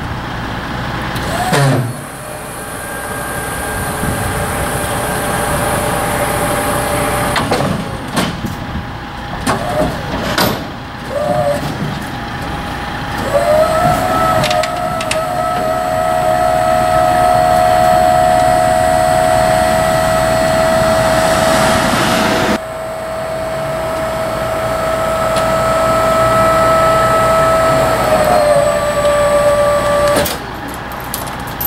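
Hydraulic pump of an enclosed car-transport trailer's rear door and liftgate running. A few short bursts of whine come first, then a steady whine from about 13 seconds in that stops briefly about two-thirds through, resumes, and drops a little in pitch near the end as the deck comes down.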